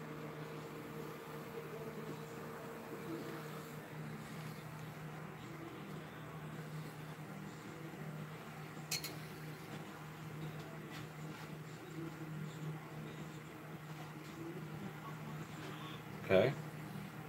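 Faint, steady sizzle of a cake doughnut frying in a pot of hot oil, over a steady low hum. A single sharp click about nine seconds in.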